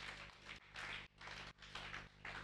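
Faint applause from a small congregation, coming in uneven bursts of hand-clapping.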